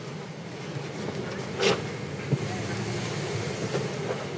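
Steady low hum of an airliner cabin's air conditioning and ventilation, with a brief sharper noise about a second and a half in and a light click soon after.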